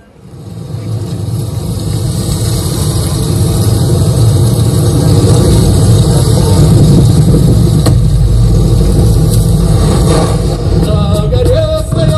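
Motorcycle engine running and revving loudly, played through large outdoor PA speakers as part of a screen video's soundtrack; it builds up over the first couple of seconds, and music comes in near the end.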